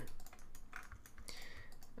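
Computer keyboard keys and clicks tapped irregularly and lightly, as shortcut keys and clicks are used while editing a 3D mesh.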